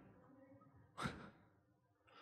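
Near silence, broken about a second in by one short breath, like a sigh, close to the microphone.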